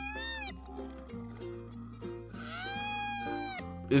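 A koala crying out twice: a high, wavering, cat-like cry that trails off about half a second in, then a second cry of about a second that rises, holds and falls. Steady background music plays under it.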